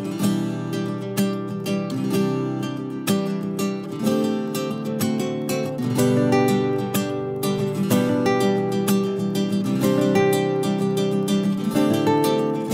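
Instrumental introduction of a song: guitar playing chords in a steady rhythm.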